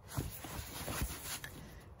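Fabric rubbing and rustling as hands handle the padded cover of a child's car seat, with a couple of soft knocks.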